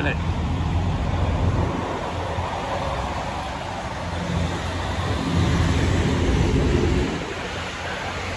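Outdoor rumble of wind on the microphone mixed with vehicle traffic noise, swelling louder a little after five seconds in and easing about two seconds later.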